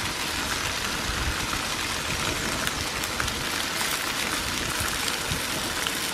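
Turkey bacon sizzling on the griddle of a Camp Chef propane camp stove, with peppers frying in a cast-iron skillet beside it: a steady sizzle with fine crackles.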